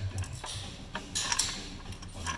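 Irregular metallic clicks and ticks from inside a C7 Corvette's rear differential as its gears are turned slowly, a few strikes a second and loudest a little past halfway. The mechanics take the noise for damage in the differential's center section.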